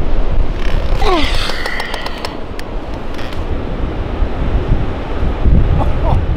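Strong wind buffeting the microphone as a steady low rumble, with surf behind it. A few knocks in the first two seconds and a short falling cry about a second in.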